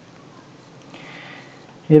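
A pause in the lecture narration with low background hiss and a soft breath drawn in through the nose about a second in. Speech starts again just before the end.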